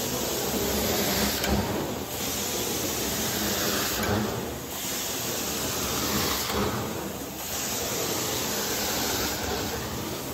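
Carpet-cleaning extraction wand spraying hot solution and sucking it back up through its vacuum hose: a steady loud hiss and rush of suction. The hiss dips briefly about every two and a half seconds as the wand is worked across the carpet in strokes.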